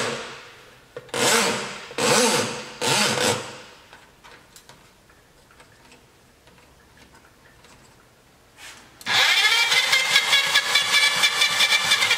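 Electric drum-type drain cleaner's motor spinning the drum and cable in three short bursts in the first few seconds. After a quiet stretch it runs steadily again from about nine seconds in, with a fast, even rattle.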